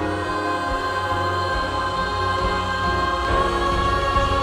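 Mixed church choir singing held, sustained notes, with low accompaniment underneath.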